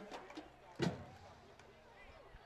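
Faint, even background noise, nearly silent, broken by one short vocal sound a little under a second in.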